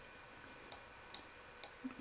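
A few faint clicks of a computer mouse, about four spread through the two seconds, over quiet room hiss.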